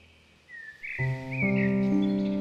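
A songbird chirping a few short rising calls over faint forest ambience, then a soft piano chord entering about a second in, with another note added near the end.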